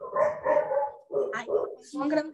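A dog barking a few times in quick succession, heard over a video call's audio.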